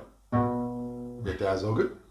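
Acoustic guitar sounded once, starting sharply a moment into the clip and ringing for about a second as it fades, then cut off abruptly. A man's voice follows near the end.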